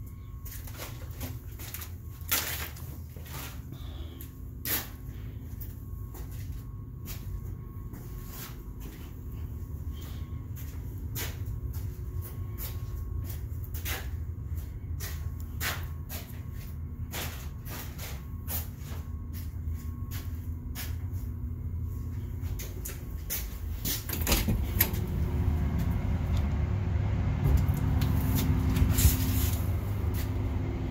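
Steady low mechanical hum with a few faint steady tones. It grows louder and fuller about 24 seconds in. Scattered light clicks and knocks sit over it.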